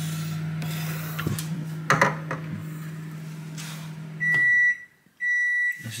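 A microwave oven running with a steady hum, with a couple of knocks about two seconds in. The hum stops about four seconds in and the oven gives long beeps about once a second, signalling that its cycle has finished.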